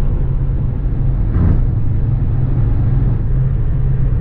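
Road and engine noise inside a Toyota Corolla's cabin at highway speed: a steady low rumble from tyres and engine. A brief louder bump comes about a second and a half in.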